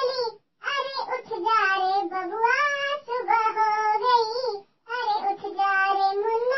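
A high-pitched, childlike voice singing a Hindi good-morning song without accompaniment, in long wavering phrases with two short breaks.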